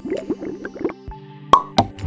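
Outro jingle with cartoon sound effects: a quick flurry of short rising blips, then held musical notes, with two sharp clicks near the end.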